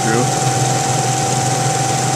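Harris Pelton-wheel micro-hydro turbine running at steady state with all four nozzles open: a steady rush of water jets spraying inside the housing, with a constant high whine and a low hum from the spinning machine.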